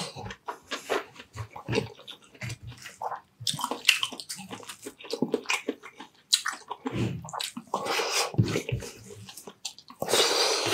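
Close-miked eating: irregular crunching and wet chewing of crispy deep-fried chicharon bulaklak (pork mesentery).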